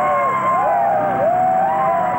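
Several men's voices yelling and whooping together in long, overlapping rising-and-falling calls.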